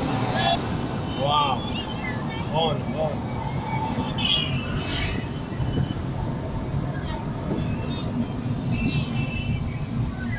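Steady engine and road noise heard from inside a slowly moving car, with scattered voices calling out now and then, the loudest calls a couple of seconds in.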